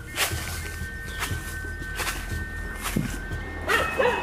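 Footsteps crunching through dry fallen leaves on a hillside path, a step every second or so, over two faint steady high tones. Near the end there is a short, wavering, voice-like call.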